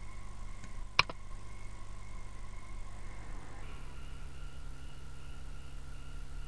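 Low steady electrical hum on the recording, with one sharp computer mouse click about a second in; the hum changes its tone a little past halfway.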